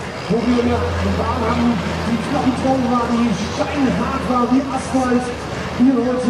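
A man talking, with a steady low diesel engine drone from the pulling tractor underneath for the first few seconds.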